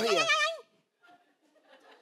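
A woman's drawn-out, quavering, bleat-like vocal sound that ends about half a second in, followed by near silence.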